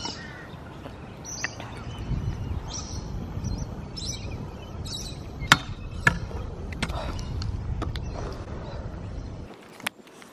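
Stunt scooter wheels rolling over concrete, with two sharp knocks about half a second apart near the middle as the scooter strikes the flat rail and lands. Birds call in the background.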